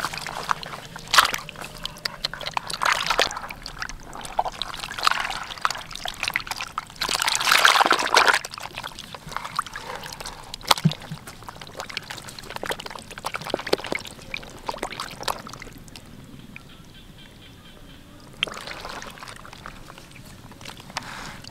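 Water sloshing and splashing in a plastic basin as live catfish thrash and hands move them about, in irregular bursts. The loudest splashing comes about eight seconds in, and it dies down near the end.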